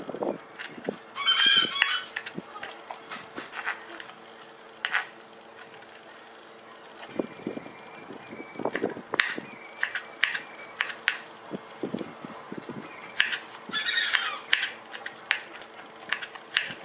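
A kitchen knife tapping and clicking on a plastic cutting board as soft jackfruit flesh is sliced into strips, in quick irregular strokes. A loud squawking animal call comes twice, about a second and a half in and again near the end, over a faint steady low hum.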